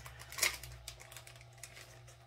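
A sticker being taken out of its small wrapping by hand: light crinkles and clicks, the loudest about half a second in, then a few softer ticks.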